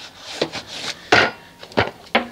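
Stiff-bristled brush scrubbing a soapy stamped steel wheel and tire, in about three short scraping strokes; the loudest comes a little past a second in.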